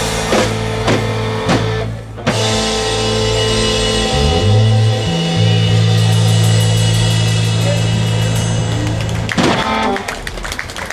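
Live band of electric guitars and drum kit playing a song's ending: drum strokes about twice a second, then a long held final chord. Cymbals roll under the chord, and a final hit cuts it off near the end.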